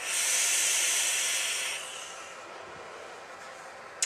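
A draw through a rebuildable vape atomizer with a 0.12 ohm coil on a dual-18650 parallel mechanical box mod: a steady hiss of air and firing coil for just under two seconds, then a fainter hiss.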